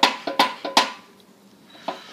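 Handling knocks: four quick, sharp taps in the first second, then a quieter stretch with one more tap near the end.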